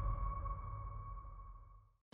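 Sustained ringing tone over a low rumble, the tail of a trailer's closing sound design, fading steadily away to silence near the end.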